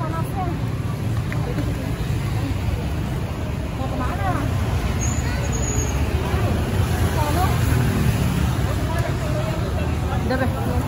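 Steady low rumble of street traffic, a little louder in the second half, with indistinct chatter of people nearby.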